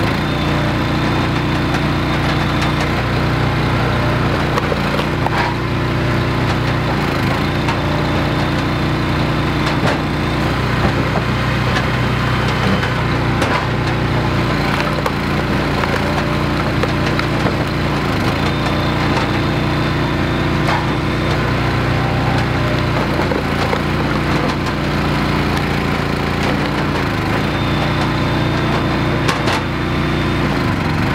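The gas engine of a Wolfe Ridge compact commercial log splitter running steadily, with frequent cracks and snaps of rounds splitting and split pieces knocking onto the table. The engine's pitch dips briefly a few times as the ram bears down on the wood.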